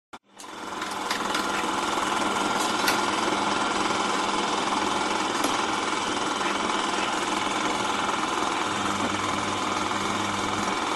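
Film projector running, its film transport making a steady, fast mechanical rattle. It starts with a click and builds up to full level over the first couple of seconds.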